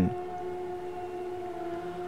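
Background music: a single low drone note held steady, like a sustained synth pad.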